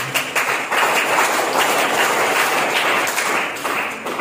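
Audience applause: many hands clapping in a dense patter that begins suddenly and thins out near the end.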